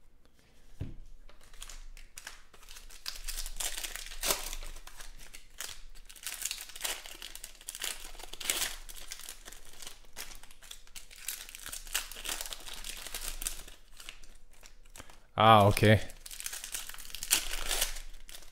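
Foil wrappers of Panini Prizm football card packs crinkling and tearing as they are ripped open by hand, a dense run of crackles and sharp clicks.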